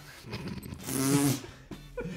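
A man laughing: one breathy, wavering laugh lasting about half a second, near the middle.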